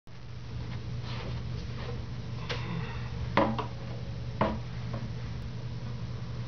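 Handling noise of an acoustic guitar and a wooden chair being settled into: a few knocks and bumps, the sharpest about three and a half and four and a half seconds in, one leaving a short ringing tone, over a steady low hum.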